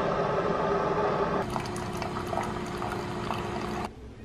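Single-serve pod coffee maker brewing, with hot water running through and pouring out. About a second and a half in, the sound changes and a steady pump hum comes in; it stops suddenly near the end.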